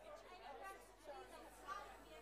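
Faint, indistinct chatter of several people talking at once in a large room, with no words standing out.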